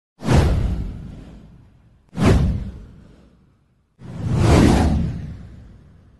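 Three whoosh sound effects for an animated title intro, about two seconds apart. Each starts suddenly and fades away over a second or more; the last one swells in more slowly.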